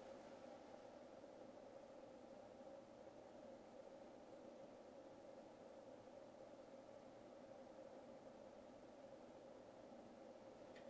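Near silence: faint room tone with a steady hum.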